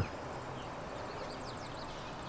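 Faint bird chirps, several short sliding notes, over a steady background hiss.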